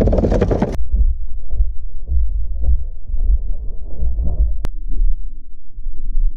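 Loud, uneven low rumble of wind buffeting an outdoor camera microphone, with a loud hiss in the first second and a single sharp click a little before the end.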